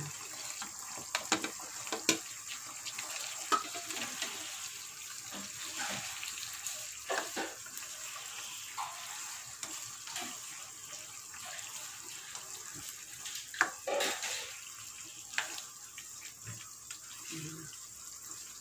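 Spatula scraping food off a plate into a wok and stirring pieces in a simmering tomato sauce: scattered clicks and scrapes over a steady hiss of the bubbling sauce, with a louder knock about 14 seconds in.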